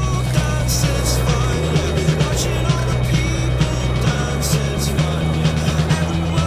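Indie disco music track with a steady beat, a bass line and short melodic phrases.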